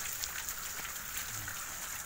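Steady outdoor background hiss, with no distinct events.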